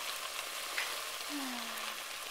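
Chopped onions, green peppers and freshly added canned tomatoes sizzling in a hot, nearly dry steel pan: a steady frying hiss as the liquid hits the hot metal and steams off.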